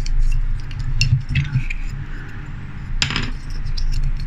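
Small plastic parts of a Matchbox diecast refuse truck handled and fitted together by hand, with light ticks and one sharper click about three seconds in, over a steady low hum.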